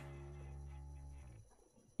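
A faint steady hum made of several held tones, fading out about a second and a half in.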